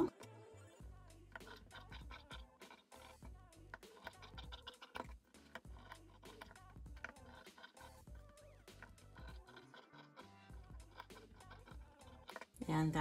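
Fabric shears snipping through cotton toile fabric in a run of short, irregular cuts, faint under soft background music.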